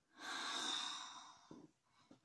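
A long breathy exhale close to the microphone, lasting about a second, followed by a short soft tap.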